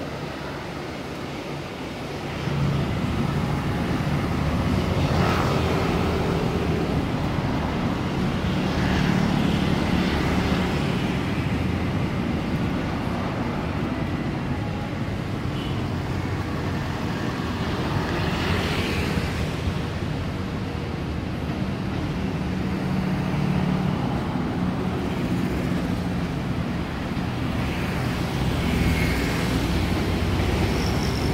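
Freight train of cargo wagons rolling past close by, mixed with road traffic driving by in the foreground; the steady low sound gets louder about two seconds in and stays loud.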